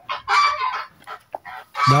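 Harsh, raspy calls of a great kiskadee fledgling: two longer calls in the first second, then a few short ones.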